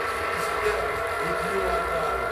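Sound-system PA carrying a sustained drone of several held tones over a steady low bass, with an echoing male voice faintly in it.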